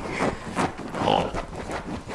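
Small dog rooting and rubbing its face into a fabric couch cushion. Its paws scratch the upholstery and its nose snuffles in an irregular run, with a louder breathy snort about a second in.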